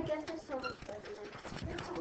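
Faint, indistinct voices murmuring in a classroom, with low room noise, during a lull in the teacher's talk.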